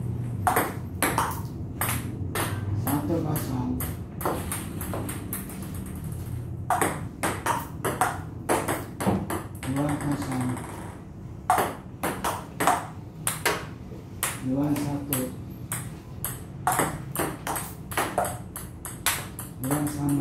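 Table tennis ball clicking sharply off the table and the paddles in quick rallies, with short breaks between points.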